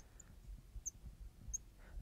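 Marker tip squeaking faintly on a glass lightboard in a few short, high chirps as a word is written.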